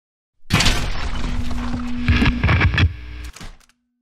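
Logo intro sound effect: about three seconds of loud crashing noise with several sharp knocks over a steady low hum, cut off abruptly, followed by a short fading tail.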